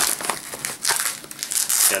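Stiff Velcro-lined fabric divider panel handled and flexed, giving an irregular rustling and crinkling of fabric.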